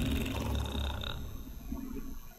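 A low, steady rumble with a few faint sounds over it, fading out near the end: tense ambience in an animated horror cartoon's soundtrack.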